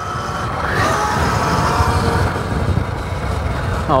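Wind rumbling over the microphone as a 72-volt Sur-Ron electric dirt bike with an upgraded motor accelerates hard, with a faint motor whine rising in pitch.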